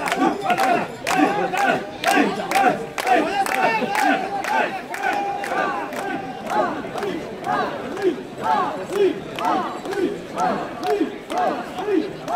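Mikoshi bearers shouting a rhythmic chant together as they carry the portable shrine through a dense crowd, the call repeating about twice a second, with sharp clacks throughout.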